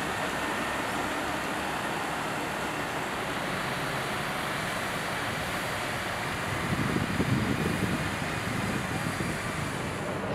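Steady rushing noise of fire-truck water cannons spraying disinfectant mist, with truck engines running. It swells louder for about a second or two around seven seconds in.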